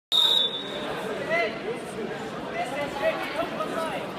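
A short, loud, high whistle blast right at the start, the referee's whistle starting the wrestling bout. It is followed by steady chatter and calls from spectators in a gymnasium.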